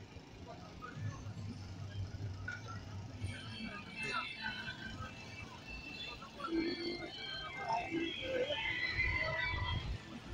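Chatter of a crowd of people talking, indistinct, with music playing in the background.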